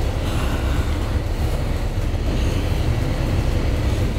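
Steady low rumble of an AC sleeper bus on the move, heard from inside its curtained cabin, under an even rush of air from the overhead AC vent.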